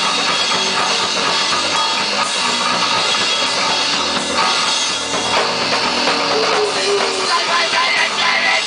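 Crust punk band playing live: distorted electric guitar and a drum kit going hard and loud without a break.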